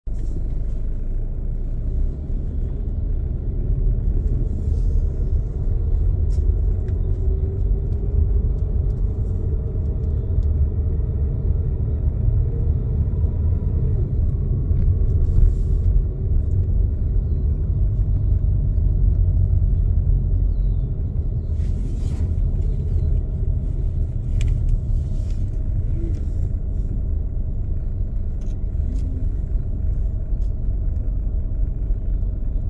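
Steady low rumble of a car's engine and tyres heard from inside the cabin while driving, with a few brief faint knocks.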